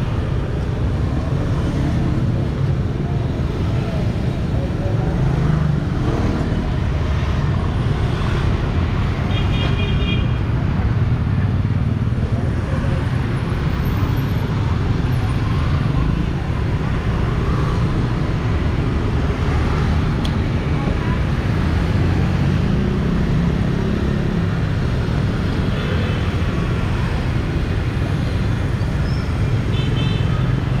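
Steady street traffic dominated by passing motorbikes, a continuous engine and tyre rumble. A short high horn beep sounds about ten seconds in and again near the end.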